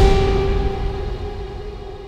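Dramatic background score: a held low note with quieter sustained tones above it, fading away.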